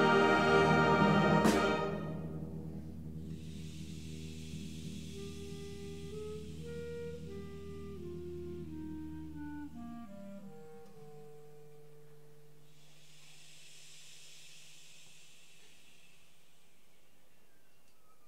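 High school concert band playing: a loud full-band chord that cuts off about two seconds in, followed by a soft passage of held low notes under a slow, step-by-step melody that fades away to quiet.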